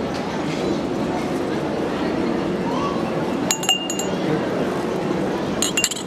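Metal puja vessels on a plate clinking in two short clusters of sharp, ringing clinks, about three and a half seconds in and again near the end, over a steady murmur of voices.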